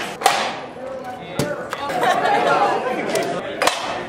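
Several teenagers' voices talking and calling out over one another, with three sharp knocks spread through.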